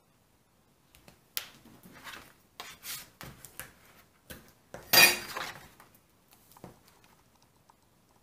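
Double-sided score tape being pulled off its roll and pressed along the edges of a cardstock piece, with scattered taps, clicks and rustles of tools and paper; the loudest is a short rasp about five seconds in.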